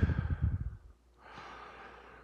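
Breathing: a short huff that trails off within the first second, then a faint, soft exhale about a second long near the end.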